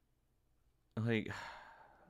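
A man's long exasperated sigh, breathed out as he says "Like," about a second in and fading away over the next second.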